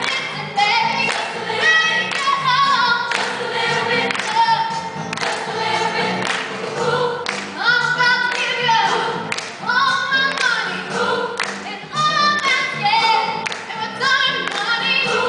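A female soloist singing into a handheld microphone, her voice amplified, with a choir singing behind her.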